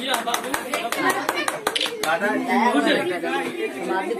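Several people talking at once, with a run of quick hand claps through the first couple of seconds.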